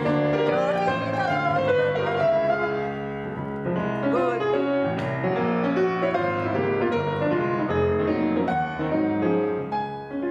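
Grand piano played continuously in a classical passage, with full chords over a moving bass line and no break.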